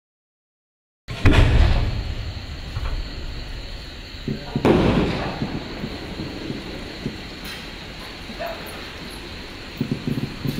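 A 5-inch aerial firework shell: a deep, loud thump of the launch about a second in, then the shell's burst boom a few seconds later, trailing off in a rumbling echo with faint high ticks as the silver glittering waterfall stars fall.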